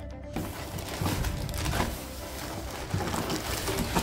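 Plastic-wrapped syringe packs rustling and crinkling as they are handled, with soft music playing underneath.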